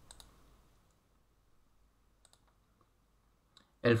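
A few faint computer mouse clicks, spaced apart, over a near-silent background, as drop-down arrows in a Word dialog are clicked. A man's voice starts speaking right at the end.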